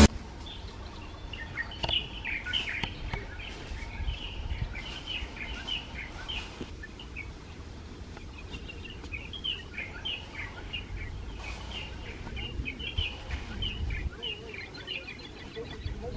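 Several birds chirping and calling in quick, short high notes throughout, over a low steady rumble of outdoor background noise.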